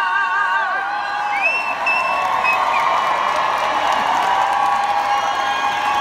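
Concert audience applauding and cheering with scattered whoops, as a female singer's held note with vibrato ends about a second in.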